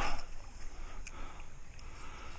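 Low, steady outdoor noise of the flowing creek and light wind on the microphone, with a faint click about a second in.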